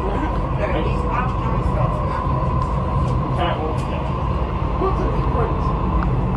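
Dubai Metro train running along an elevated track, heard from inside the carriage: a steady low rumble with a thin steady tone over it. Faint passenger voices come and go.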